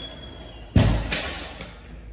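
Metal lever door handle and latch being worked by hand on a closed door: a loud thud about three-quarters of a second in, then two smaller metallic clicks, each ringing briefly.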